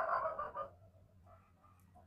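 A man's short, creaky, drawn-out hesitation sound, a vocal-fry "uhh", in the first half-second or so, then a few faint soft sounds.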